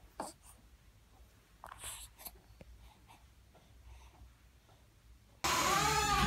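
Faint rustling and a few soft clicks of handling noise. About five and a half seconds in, a sudden loud cut brings in a voice over steady background noise.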